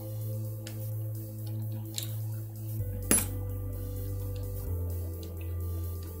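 Soft background music with sustained low notes, over which a few small sharp clicks sound, the loudest about three seconds in, as a dashcam's circuit board is pressed down into its plastic case.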